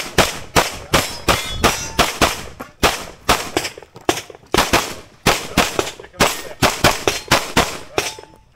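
Handgun fired rapidly at a practical-shooting stage, the shots coming mostly in quick pairs with short pauses between strings as the shooter moves between targets. The firing stops right at the end.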